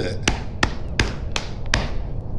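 Body-percussion taps struck in an even beat, five sharp strikes about two and a half a second, some of them heavier and lower.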